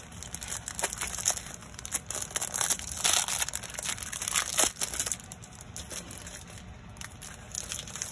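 Clear plastic wrapping of a craft paper pack crinkling as it is handled and turned over, a dense run of crackles that thins out over the last few seconds.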